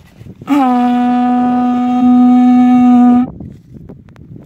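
A homemade tube horn blown in one long, loud, steady note, starting about half a second in with a slight dip in pitch, getting louder around two seconds in, and cutting off sharply after nearly three seconds.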